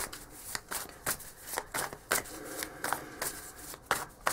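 A deck of tarot cards being shuffled by hand: an irregular run of crisp card clicks and slaps, two or three a second.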